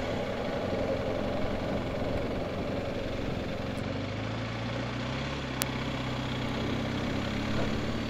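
Motorcycle engine running at low speed as the bike rolls slowly, heard from the rider's seat over steady road and air noise. The engine note rises slightly about halfway through, and there is a single sharp click a little later.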